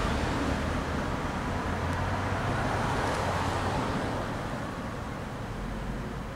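Road traffic noise from a passing vehicle, a steady hiss and low hum that slowly fades.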